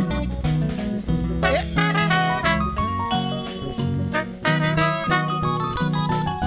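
Live band playing: trumpet and trombone horn lines over bass guitar, keyboard and a steady drum beat. The horns come in strongly about a second and a half in.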